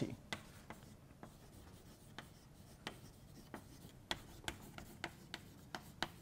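Chalk writing on a blackboard: faint taps and scratches as each stroke is made, coming more often in the second half.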